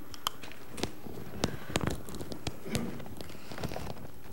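Scattered light clicks and taps from a phone being handled and things being moved on a wooden lectern close to the microphone, over steady room tone.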